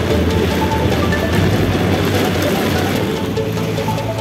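Background music with short melodic notes over a dense, busy backing.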